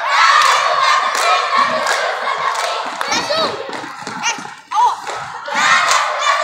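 A squad of young girl cheerleaders shouting a cheer chant together, with hand claps and stomps. There is a short break near the end before the shouting starts up again.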